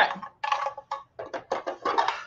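Quick clicks and taps of small makeup containers being handled, with a few soft muttered words.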